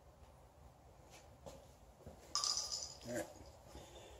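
Mostly quiet, with a few faint clicks and a short rustle of equipment handling about halfway through.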